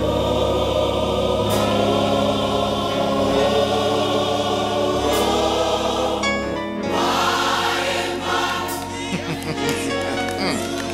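Gospel mass choir singing in full harmony, holding long sustained chords that change to a new chord about seven seconds in.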